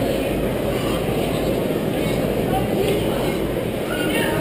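Steady murmur of many people talking at once, with a few distant voices rising faintly above it near the end.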